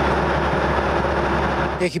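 An engine running steadily, a constant drone with a low hum. A man's voice starts right at the end.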